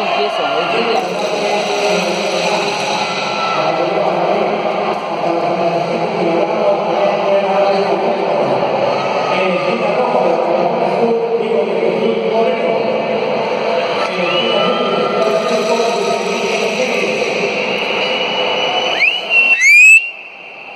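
Overlapping voices of many people talking and calling out in a large, echoing sports hall, with a loud rising call near the end.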